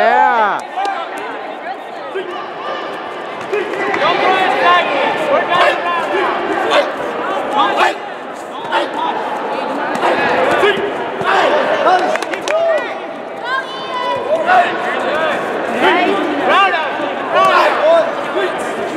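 Many voices shouting at once in a large hall, as coaches and spectators call out during taekwondo sparring, with a few sharp smacks of kicks landing on padded chest protectors.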